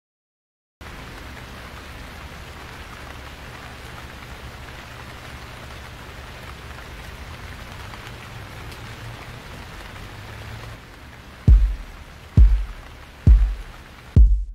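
A steady rain-like hiss over a low rumble, then three deep drum booms just under a second apart near the end, the start of a music intro.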